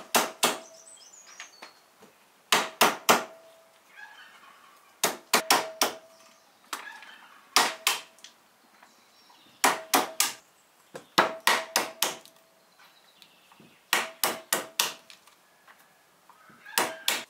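A small hammer cracking walnut shells on a wooden cutting board: groups of a few sharp knocks every two to three seconds, many of them followed by a short ringing tone.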